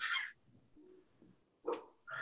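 A pause between speakers on a video call, almost silent: the last word of the question trails off at the start, and a short breath or mouth sound comes near the end, just before the answer begins.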